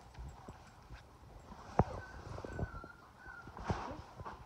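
Scattered soft knocks and taps as a border collie puppy is handled and moves about on a quilt; the loudest is a sharp click about two seconds in. A faint, thin, wavering high whimper comes from the puppy in the second half.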